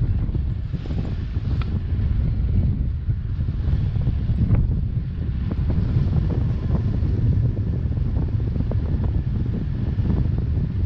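Wind buffeting the camera's microphone in paraglider flight: a loud, gusting low rumble.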